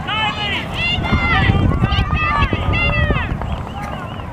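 Several high-pitched voices calling and shouting at once, none of it clear words, over a low rumble.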